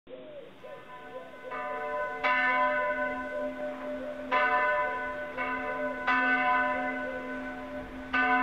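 Full peal of church bells, the two larger ones cast-steel bells from 1922, tuned to G, B-flat and C. Strikes fall unevenly about every one to two seconds and overlap in a long ringing. The peal grows louder over the first two seconds.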